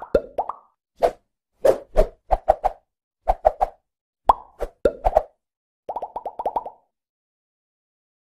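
Animated logo intro's sound effects: a string of short plops and pops, ending in a quick run of about seven some six seconds in.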